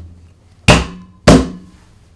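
Two loud thuds about half a second apart as a galvanised steel concentric reducer is pushed home onto spiral ductwork over its rubber seals, the sheet metal ringing briefly after each.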